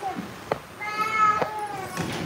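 A single drawn-out meow about a second long, high-pitched and falling slightly at its end.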